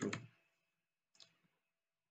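Near silence with a single faint, short click a little over a second in, from a computer keyboard or mouse being worked.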